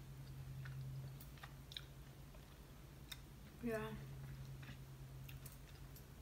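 Chili jelly beans being chewed: faint, scattered crunches, a few a second, from hard, crunchy candy.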